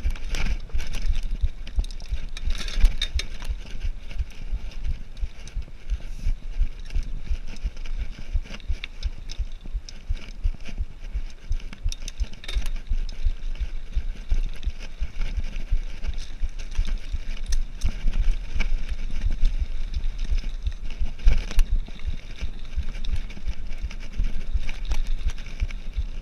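Cannondale Trail 7 hardtail mountain bike ridden over a rough dirt and gravel trail: the bike rattles and knocks over the bumps, with tyre noise on the ground and wind buffeting the microphone throughout.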